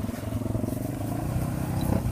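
ATV engine running steadily on a rocky, leaf-covered slope.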